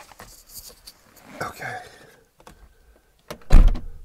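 Car door of a Mercedes R129 500SL shutting: a single heavy thump near the end, after a few seconds of faint shuffling.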